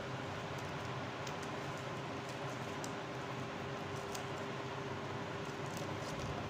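Steady background hum with faint scattered light ticks and rustles of thin paper strips being folded by hand.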